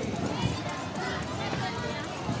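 Many people talking at once in a dense street crowd, an indistinct babble of voices, with a brief sharp click about half a second in.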